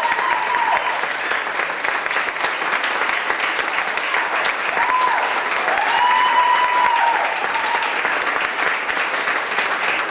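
Audience applauding, a steady patter of many hands clapping. High, drawn-out cheering shouts ring over it at the very start and again from about five to eight seconds in.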